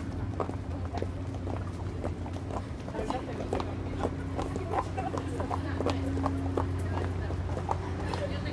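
Footsteps of several people walking on pavement, a quick irregular run of sharp clicks, over a steady low hum and faint background voices.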